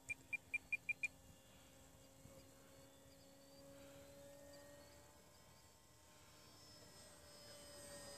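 Six quick electronic beeps at one pitch, about five a second, from a radio-control transmitter's trim switch being clicked to trim out the model aircraft's pitch. Afterwards only a faint, steady drone from the model's motor far overhead.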